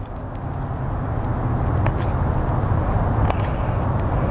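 Low engine rumble of a road vehicle, growing steadily louder, with a few faint clicks over it.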